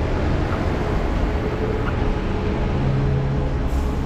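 A bus running at a bus stop: a steady engine hum over dense, rumbling street noise.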